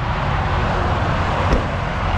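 Steady noise of highway traffic passing close by, with a short knock about one and a half seconds in.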